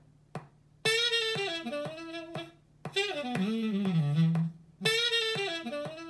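A jazz saxophone sample looping in playback: a short melodic phrase starts about a second in and comes round again near the end as the loop repeats.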